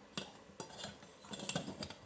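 A small circuit board being handled on a wooden workbench: about six sharp clicks and clinks, the loudest near the start and about a second and a half in.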